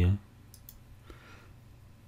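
A few faint, isolated computer mouse clicks while selecting geometry in the CAD program.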